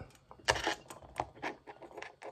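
Several light clicks and knocks from handling a tape measure and plastic action figures on a desk, the loudest about half a second in.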